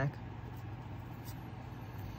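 Steady low hum of background room noise, even throughout, with no distinct events.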